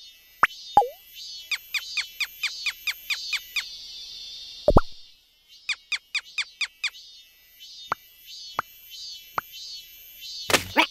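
Cartoon sound effects: two quick runs of short falling plops, about five a second. There is one louder, deeper plop near the middle and a few single plops near the end, over a faint high background hum.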